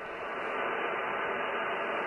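Steady hiss of band noise from a Yaesu FTDX10 transceiver's speaker on the 20-metre band, narrow and thin like the radio voice before it, slowly getting louder: the open channel after the other station has stopped transmitting.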